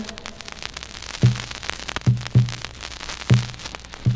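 Vinyl record surface crackle and hiss, then a low drum comes in about a second in, beating in a repeating pattern of one stroke followed by two quick strokes: the opening beat of a song.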